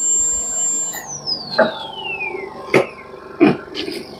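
High-speed dental air-rotor handpiece whining at a steady high pitch, then winding down about a second in, its whine falling smoothly over about a second and a half. A few short knocks follow as the unit is handled.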